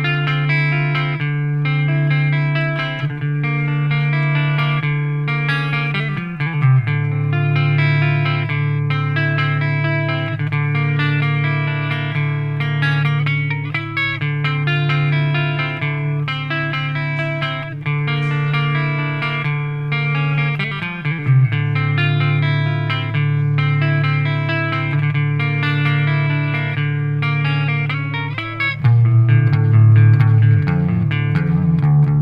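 Clean electric guitar, a Gibson Les Paul through a Randall amp, picking a flowing pattern of single notes over backing music whose long held low notes change every several seconds, about six seconds in, about twenty-one seconds in, and again near the end.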